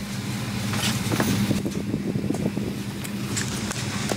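Steady hum and air noise inside an airliner cabin parked at the gate during boarding, a constant low drone with a few light knocks and rustles of passengers settling in.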